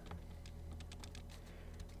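Faint, irregular light clicks and taps over a low steady hum.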